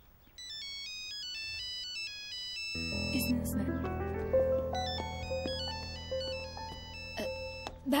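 Mobile phone ringtone playing an electronic melody of high stepping notes. Low sustained chords join about three seconds in.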